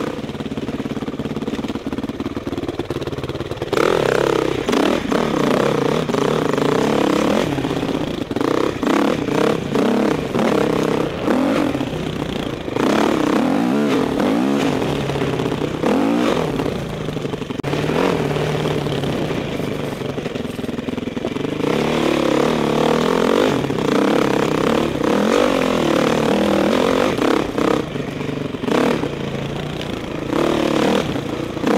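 Dirt bike engine, heard from the rider's onboard camera, revving up and easing off again and again as the bike is ridden along a rough trail, its pitch rising and falling with the throttle, with short knocks now and then from the rough ground.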